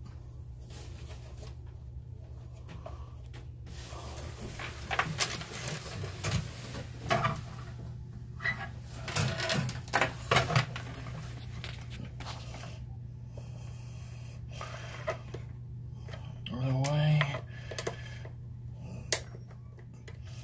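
Handling noise as cables are worked by hand around a solar charge controller: a run of sharp knocks and clicks in the middle, over a steady low hum. A short mumbled vocal sound comes near the end.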